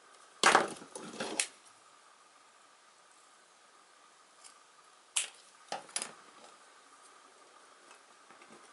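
A thin wooden lath being cut with scissors: sharp cracking snips of splitting wood. The loudest cluster comes about half a second in, and three more cracks follow around five to six seconds.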